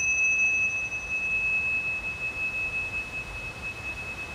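A pair of tingshas, small Tibetan hand cymbals, ringing on after being struck together: one clear, high, sustained tone that slowly fades, with a fainter higher overtone dying away about a second and a half in.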